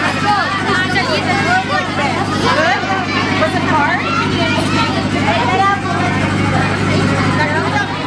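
Many schoolgirls' voices chattering and calling out over one another, with a steady low motor hum running underneath.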